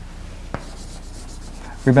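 Chalk scratching across a blackboard as a word is written, with one click about half a second in.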